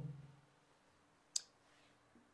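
A single sharp click from a whiteboard marker about a second and a half in, against quiet room tone.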